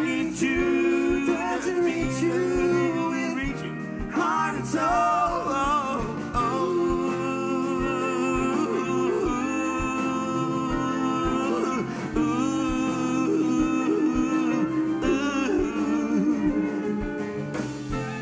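A live band plays a song with a lead singer and backing vocalists, over piano, drums and guitars. Held sung notes run over a steady low beat.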